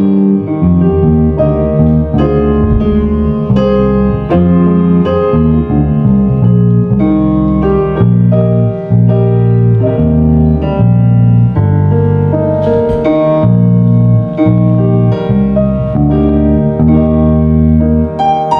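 Electric bass guitar playing a slow melody of held notes with piano accompaniment.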